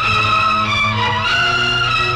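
Orchestral introduction of a 1960s Hindi film song: a violin section holds a long note, then moves up to a higher one about halfway through, over a low sustained bass.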